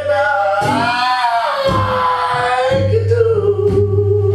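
A male blues singer belting one long, high held note that swells and wavers, accompanied by acoustic guitar. The guitar thins out under the note and comes back with a steady low strummed pattern near the end.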